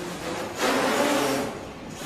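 Small quadrotor's electric motors and propellers buzzing, swelling louder about half a second in and fading back about a second later as it manoeuvres.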